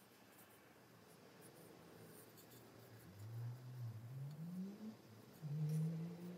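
Soft scratching strokes of a glaze brush on a bisque-fired ceramic mug. From about halfway through, a louder low droning tone comes in, rising in pitch, breaking off, then holding steady near the end.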